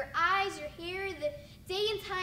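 Speech only: a high-pitched young voice talking in a rising and falling, sing-song manner.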